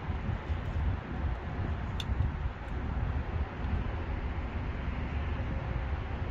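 Steady low rumble and hiss of outdoor background noise, with one sharp click about two seconds in.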